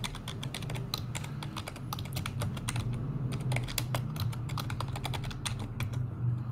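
Computer keyboard typing: a quick, uneven run of keystrokes as a name is typed into a text field.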